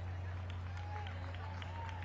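Faint, indistinct chatter of people nearby over a steady low hum, with scattered small clicks and no clear words.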